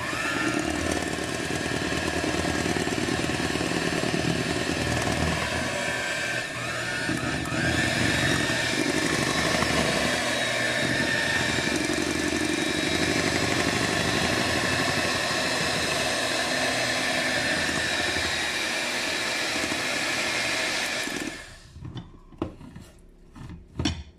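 Electric hand mixer running steadily, its beaters whisking batter in a glass bowl, then switched off near the end. A few light knocks follow.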